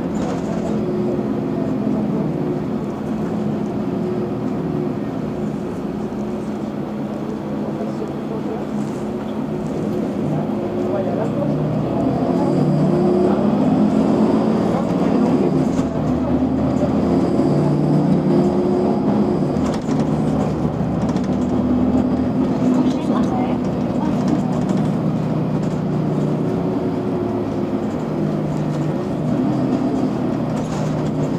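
Inside a Mercedes-Benz Citaro G C2 NGT articulated natural-gas city bus under way: the engine drones steadily, growing louder for a stretch in the middle as the bus pulls harder, then easing back.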